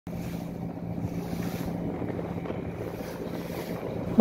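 Engine of a wooden motor boat running steadily under way, a constant low hum, with wind buffeting the microphone and water rushing along the hull.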